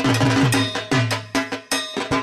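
Loud rhythmic percussion music: a steady beat of drum strikes with a ringing metallic clang on top, about three beats a second.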